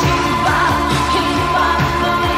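Pop song: a sung vocal line held and wavering over a full band backing with a steady, repeating drum beat.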